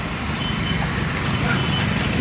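Steady road traffic noise from passing cars: engine rumble and tyre hiss, with a faint thin high tone for about a second and a half in the middle.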